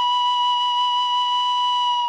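Serbian frula, a wooden shepherd's flute, holding one long steady note.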